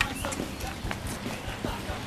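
Footsteps and light irregular knocks on wet paving stones as people walk about and a motorcycle is wheeled by hand.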